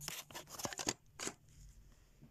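A quick run of small, sharp clicks in the first second and one more shortly after, then faint room hum.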